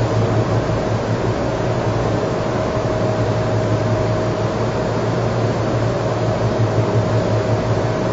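Steady room hum and hiss with a low drone and a constant mid-pitched tone, unchanging throughout.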